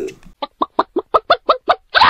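A rapid run of about nine short, pitched calls, roughly six a second, followed by a brief louder burst at the very end.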